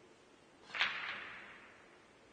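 Cue tip striking the cue ball in a pool shot: one sharp click, then a softer click a moment later as the cue ball hits an object ball, with a brief trailing ring.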